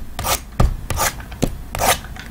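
Shrink-wrapped cardboard trading-card boxes being handled and stacked, sliding against and knocking on one another: a quick series of short scrapes and taps.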